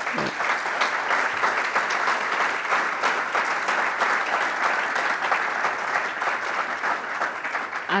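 Audience applauding: an even round of clapping that stops near the end.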